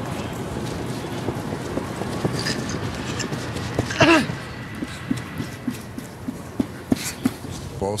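Hollow ambience of a largely empty stadium, with a short shout about halfway through, followed by a run of sharp, irregular knocks.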